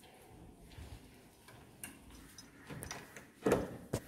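Quiet room with a few light clicks and taps, then a dull thump about three and a half seconds in and a sharp click just after.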